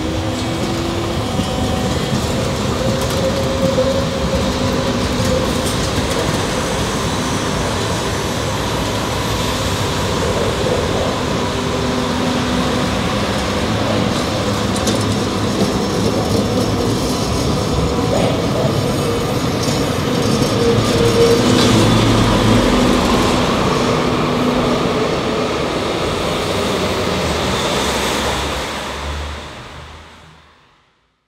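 Hannover Stadtbahn TW 6000 light-rail cars running on the tracks: a steady hum with a few held tones over rolling wheel noise, one tone gliding upward at the start. It swells louder a little past the middle and fades out near the end.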